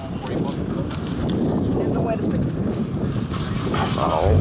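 Indistinct voices of people talking nearby, over footsteps on a wet dirt road.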